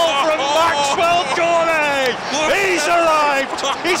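A man's voice calling out excitedly and without pause as a goal goes in, the pitch swooping up and down.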